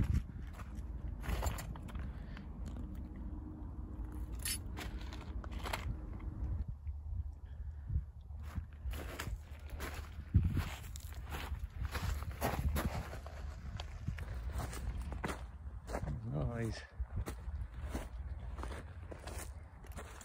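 Footsteps crunching over beach pebbles and rocks at a walking pace, roughly one to two steps a second, with one sharper knock about ten seconds in. A low rumble sits under the first six seconds or so.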